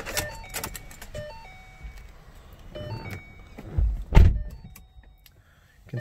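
Inside a 2012 Ford Mustang as the ignition key is turned to on: clicks and handling noise with several short electronic tones, then a heavy thump about four seconds in.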